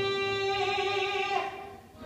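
A male singer holds the final note of a musical-theatre song over accompaniment. The long, steady note cuts off about one and a half seconds in.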